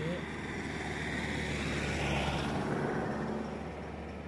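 A vehicle passing on the road, its engine and tyre noise swelling to a peak about halfway through and then fading.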